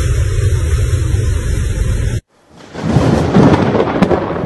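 Loud, steady roar of typhoon wind and rain with a heavy low rumble. It cuts off suddenly about two seconds in, and after a brief near-silent gap a second loud rush of storm noise swells up near the end.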